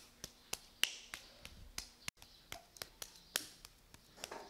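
Bare hands patting and slapping a lump of black clay for Koji ceramics as it is worked, about four sharp, short pats a second, uneven in strength.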